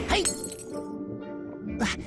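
Cartoon sound effect of something shattering like glass, a sharp ringing crash just after the start, over cheerful background music; a second short burst comes near the end.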